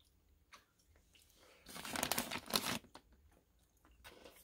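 Plastic snack bag of pretzel bites crinkling as it is handled, a dense crackle lasting about a second near the middle, after a single faint click.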